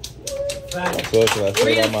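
A small group of people clapping and cheering, the claps starting a fraction of a second in and growing denser, with several voices calling out over them.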